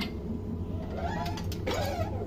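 Glasses and ceramic bowls handled in a dishwasher rack, with a light clink right at the start and another near the end, over a steady low machine hum.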